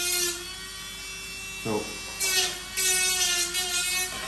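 Small handheld electric rotary engraver running with a steady whine while its bit engraves a signature into a plastic guitar plectrum. Short scratchy grinding bursts come as the tip cuts into the plastic, once at the start and twice more in the second half.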